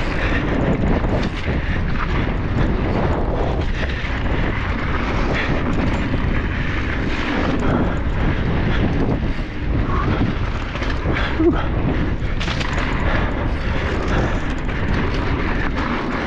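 Wind rushing over the microphone and knobby tyres rolling fast on hard-packed dirt during a mountain-bike descent, with scattered clicks and rattles from the full-suspension bike.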